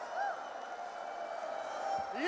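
Audience applauding and cheering after a song ends, fairly quiet in the mix, with one brief shout about a quarter second in.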